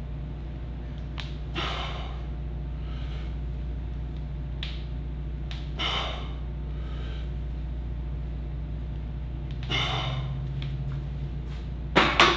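A man breathing hard through slow squat reps with an empty bar: a loud, sharp exhale about every four seconds, with softer breaths between, over a steady low hum.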